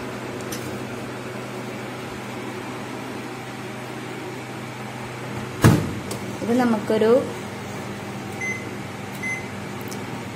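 Convection microwave oven humming steadily. Its door shuts with a single knock a little past halfway, and two short high beeps from its keypad follow as it is set for baking.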